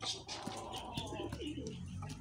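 Domestic pigeons cooing, low and wavering, with a few soft taps mixed in.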